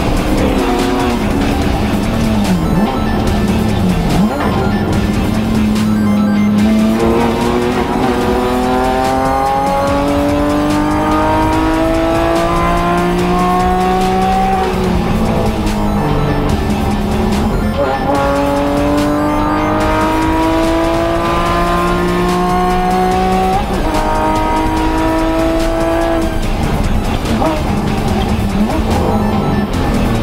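Porsche 911 (991) race car's flat-six engine heard from inside the cockpit, revving hard through the gears. The pitch falls under braking near the start, then climbs for several seconds, drops at each upshift and climbs again.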